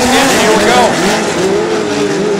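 Several dirt-track midget race car engines running hard at high revs together. Their pitches overlap and rise and fall as the cars come through the turn, with one climbing and dropping a little under a second in.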